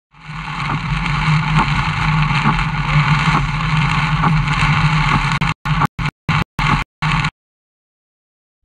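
Car driving on a highway in heavy rain, heard from inside the cabin: steady road and rain noise with a low drone and light ticks about once a second. Near the end the sound breaks into a quick run of short chops and then cuts off.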